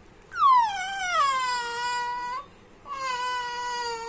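Infant's voice: two long, high-pitched vocal calls, the first about two seconds long and falling in pitch, the second, after a short pause, held at a steady pitch.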